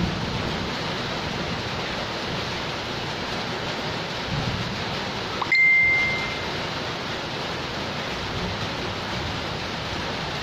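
Steady rain falling on a concrete yard and its puddles. About halfway through, a single short, clear ding rings out over it.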